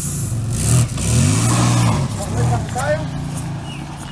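A vehicle engine running and revving, with voices calling out over it.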